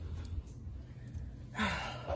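A woman's breathy sigh about one and a half seconds in, over a low steady hum.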